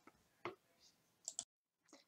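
Near silence with two faint, short clicks, about half a second in and just past a second in.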